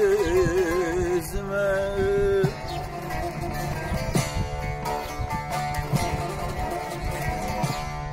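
Three bağlamas (long-necked Turkish lutes) strummed together in a Turkish folk tune, with a man singing a long, wavering held note that ends about two and a half seconds in; the lutes then carry on alone in an instrumental passage.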